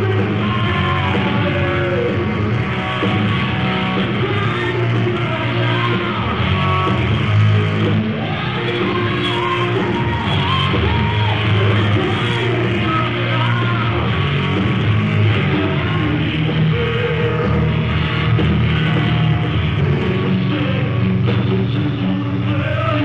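A hard-rock band playing live, with electric guitar, bass and drums and a singing voice. It is a dull, muffled audience recording, with almost nothing in the high end.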